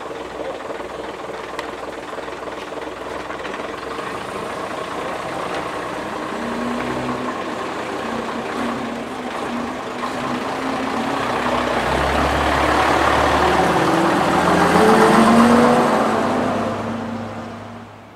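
Engine of a vintage half-cab double-decker bus pulling away and driving past, growing steadily louder as it approaches, loudest about fifteen seconds in, then falling away near the end.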